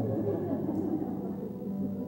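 Soft background worship music: a quiet held chord sustained steadily, with faint murmuring voices over it.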